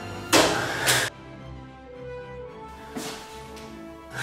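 Background music with a loud whoosh about a third of a second in, lasting most of a second, as the paper ninja star is thrown; a fainter whoosh follows about three seconds in.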